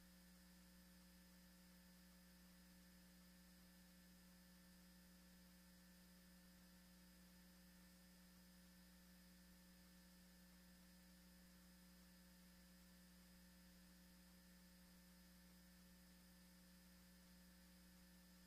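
Near silence: only a faint, steady electrical hum.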